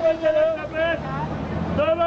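A minibus tout calling out in a high, sing-song shout over street traffic. His voice drops out for about a second in the middle, leaving vehicle engine rumble, then comes back with a rising call near the end.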